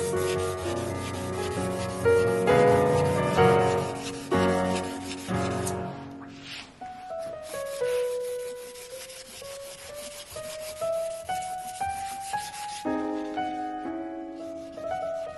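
Hands rubbing over the hard surface of a lacquered panel, quick repeated scratchy strokes that pause briefly about halfway, over soft piano music.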